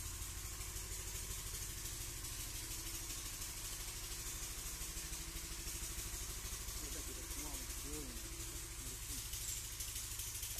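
A small engine running steadily nearby, an even low pulsing with a held hum. Faint voices come in about seven seconds in.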